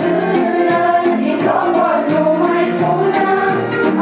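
Music: a choir singing, several voices together without a break.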